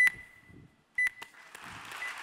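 Two sharp knocks about a second apart, each leaving a short high ring, then audience applause starting up near the end.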